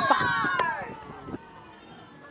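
Several voices shouting and calling at once on a football pitch, loud at first and fading within the first second, with a few sharp knocks; then quieter outdoor noise.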